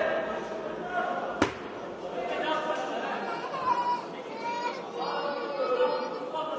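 Several people talking and calling out at once, with no single voice clear, and one sharp bang about one and a half seconds in.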